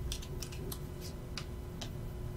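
Small tarot cards being flicked through and rearranged in the hands: a run of light, crisp card snaps and ticks, about seven in two seconds.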